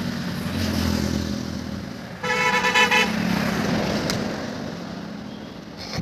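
Road traffic with a vehicle engine running and a vehicle horn honking once, about two seconds in, for just under a second.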